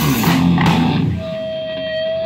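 Punk rock band of electric guitar, bass and drums playing live through amplifiers; about a second in the band stops and a single steady high electric guitar tone rings on through the amp.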